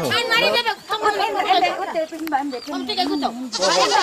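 Several high human voices, quavering with a fast tremble and overlapping. They grow louder and fuller near the end.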